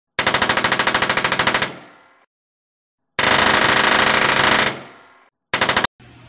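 Intro sound effect of automatic gunfire: three bursts of rapid, evenly spaced shots. The first two each trail off in an echo, and the third is short and cut off abruptly.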